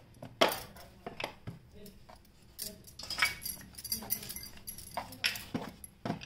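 Bangles clinking and knocking against a plate as hands sprinkle flour and press a stack of rolled dough sheets, with several sharp separate clicks and short jingles.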